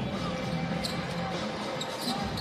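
A basketball being dribbled on a hardwood court during live play, with faint voices in the background.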